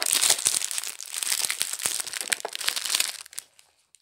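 Parcel packaging being handled and unwrapped by hand: a dense crackly rustle with many small clicks that stops abruptly shortly before the end.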